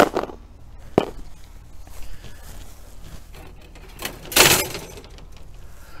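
Handling of a thin metal wire yard-sign stand and its plastic sign: two sharp clicks in the first second, then a brief, louder scraping rustle about four seconds in.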